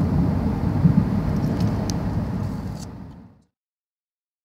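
Steady low rumble of road and engine noise heard from inside a moving car, fading out about three seconds in to silence.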